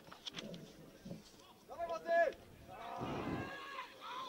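Two drawn-out shouts from men on an outdoor football pitch during play around a corner kick. The first, about two seconds in, is short and loud; a longer one follows about three seconds in. A few faint short knocks come near the start.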